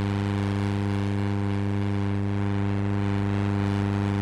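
A loud, steady low buzz at one unchanging pitch, rich in overtones, like an electronic tone.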